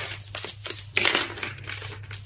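A small parrot's claws clicking and tapping on a wooden floor as it hops and runs along, in a quick, uneven run of sharp taps.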